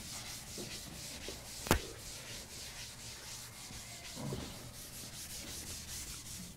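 Scratchy rubbing on a blackboard in quick repeated strokes, with one sharp click a little under two seconds in.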